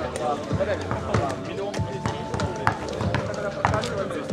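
A basketball dribbled on an asphalt outdoor court, bouncing several times at an uneven pace, over the voices of players and onlookers.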